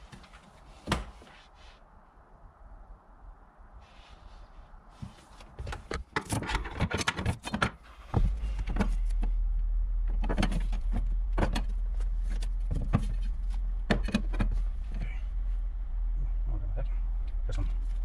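Irregular sharp clicks and knocks of hand tools and metal parts being handled around a car's fuel pump access cover, heaviest from about six seconds in. A steady low hum sets in about eight seconds in.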